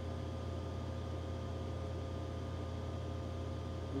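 A steady low hum with a faint hiss under it: room tone, with no other sound.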